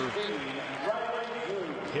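A man's voice on TV commentary over the steady murmur of an arena crowd.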